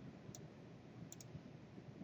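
A few faint computer mouse clicks over quiet room hiss: one light click about a third of a second in, then two close together just after a second in.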